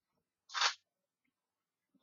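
A single short metallic scrape-click about half a second in, as a link of jewelry chain is pulled open by hand.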